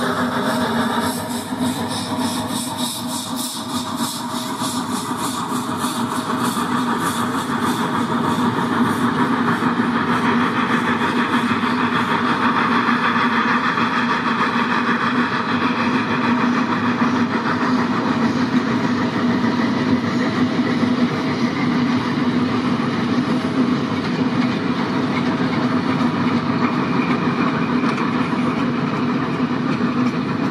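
Zillertalbahn narrow-gauge steam train going past. The locomotive's exhaust beats fade over the first few seconds, then the coaches' wheels give a steady rumble on the track that grows louder and holds.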